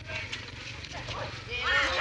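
Players' voices calling out during a volleyball rally, louder from about one and a half seconds in, with a few faint light taps early on.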